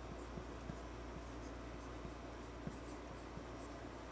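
Marker pen writing on a whiteboard: faint short strokes and taps as a word is written.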